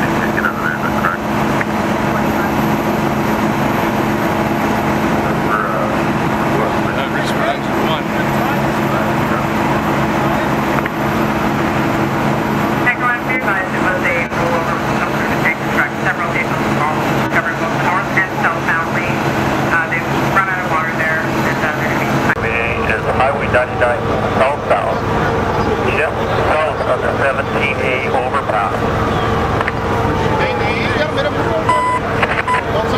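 A fire engine's motor runs with a steady drone, and voices talk over it. About three quarters of the way in, the drone gives way abruptly to a different, higher steady hum.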